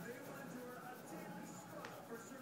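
Faint speech with some music in the background, low and continuous, with no distinct sound from the dog.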